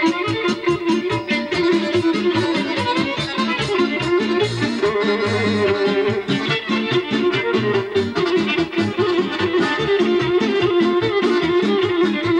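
Live folk dance music from an amplified band, played with a fast, steady beat and a walking bass line, with a violin among the instruments.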